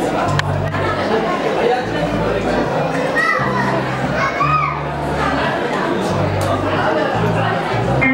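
Mixed voices talking and calling out in a large, echoing room, over music with held bass notes that step from one pitch to the next.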